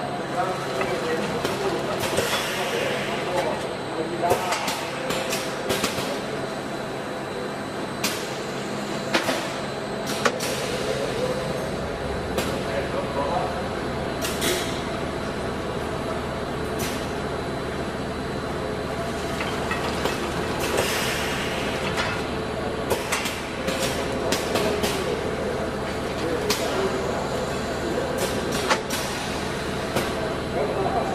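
Packaging machine with a pneumatic tray-turning device running: a steady mechanical hum with frequent sharp clicks and knocks as its arms grip and move aluminium trays. A deeper hum joins about twelve seconds in.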